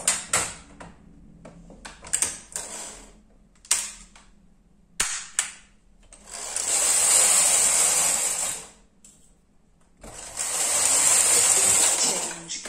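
Brother KH930 knitting machine carriage, coupled with the ribber, pushed by hand across the needle bed twice, each pass a rattling swish of about two seconds. Before the passes come several sharp clicks as the carriage settings are switched to part (PR).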